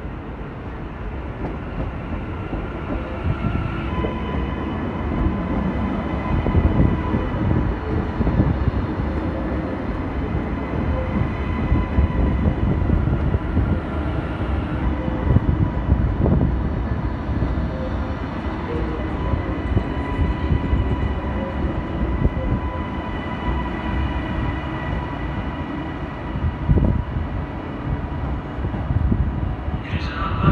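TransPennine Express Class 397 'Nova 2' electric multiple unit running slowly in along the platform: a low rumble of wheels on rail, with a steady whine that joins about four seconds in.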